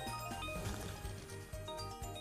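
Online slot game's music playing, with short chiming sound effects as symbols tumble and small wins pay out during a free-spins bonus.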